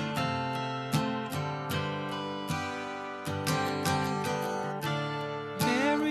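Instrumental song intro: acoustic guitar strumming chords in a steady rhythm.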